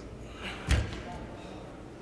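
A single dull thump on gymnastics parallel bars, about two-thirds of a second in, as a gymnast's weight comes down onto the rails swinging from a handstand into a straddle.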